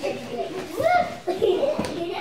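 Young children's voices babbling and vocalising without clear words, with calls that rise and fall in pitch.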